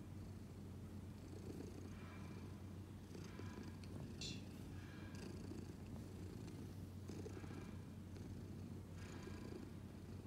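Domestic cat purring steadily, a continuous low rumble that swells and eases about every two seconds with its breathing. A short high-pitched sound comes just after four seconds in.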